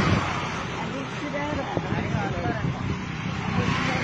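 Street traffic noise, with short stretches of indistinct voices talking.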